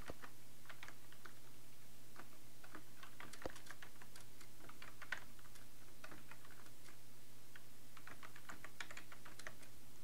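Computer keyboard typing in three short runs of keystrokes, over a steady low hum.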